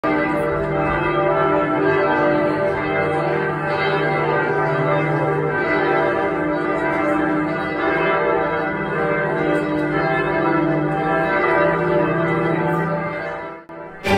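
Church bells ringing together in a continuous peal, many sustained overlapping tones, cutting away just before the end.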